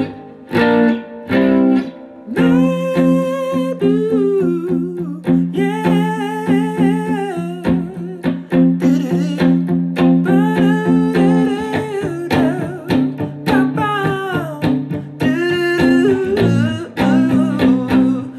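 Electric guitar strumming a repeated power-chord pattern on the A and D strings, with a person humming a wavering melody line over it.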